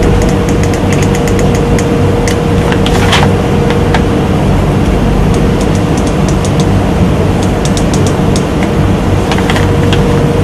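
A steady hum and hiss with one constant mid-pitched tone, with scattered faint light ticks as a needle is run over the soldered pins of an IC chip on a hard-drive circuit board.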